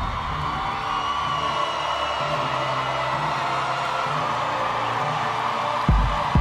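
Held electronic synth chords over an arena crowd cheering and whooping, with a few high whistles. A steady kick-drum beat, about two a second, starts right at the end.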